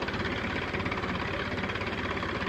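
Tractor engine running steadily with an even, rapid firing beat while it drives a tube-well pump through a shaft.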